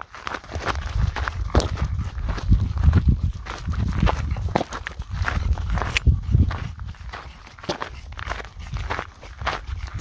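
Footsteps crunching over loose gravel and rocky desert dirt at a walking pace.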